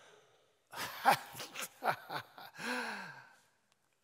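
A man laughing breathily on stage: a string of airy, huffing exhalations that ends in a short voiced sigh about three seconds in.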